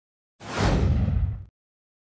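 A single whoosh sound effect about a second long, starting half a second in, its hiss falling away from the top down as it fades.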